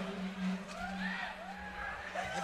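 A lull between songs in a live open-air drum-band show: a low held tone from the sound system fades away under faint crowd noise, with a few wavering calls from the crowd in the middle.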